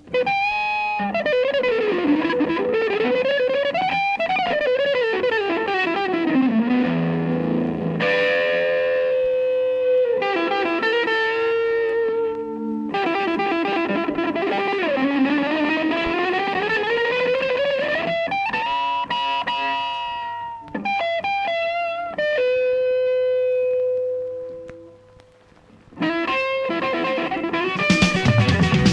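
Electric guitar with distortion and effects playing a slow solo of bending, gliding notes and long sustained tones in a 1970s progressive jazz-rock recording. A long held note fades away about three-quarters of the way through, then the full band with drums comes back in near the end.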